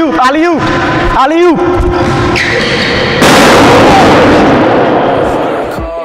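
Over-inflated basketball bursting about three seconds in: a sudden loud blast that dies away over about two seconds. Shouting voices come before it.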